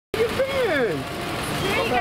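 People talking over a steady background of vehicle and traffic noise.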